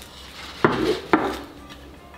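Two short knocks of a ceramic plate being handled and set down, about half a second apart.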